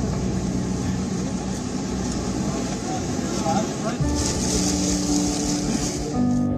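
Airliner cabin noise: the steady hum and rush of the aircraft with passengers murmuring. A low steady tone joins about four seconds in.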